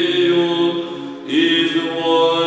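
Male voices singing Byzantine chant in the Saba mode. A held note fades about a second in, and a new note enters with a slight upward slide.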